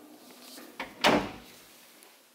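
A closet door being closed: a light click, then a louder thud about a second in.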